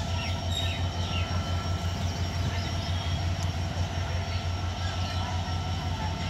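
EMD GT42AC diesel-electric locomotive pulling a passenger train out of a station, heard from a distance as a steady low throbbing engine rumble.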